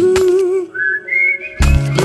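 A Tamil film song. The backing and beat drop out for about a second, leaving a high whistled tune that glides upward. Then the full band comes back in near the end.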